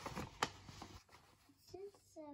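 A paper sheet rustling and crinkling as it is unfolded and handled, with one sharper crackle about half a second in.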